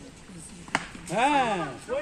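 A cricket bat hits the ball once with a single sharp knock. Straight after, a loud shout rises and falls in pitch, and another voice starts calling near the end.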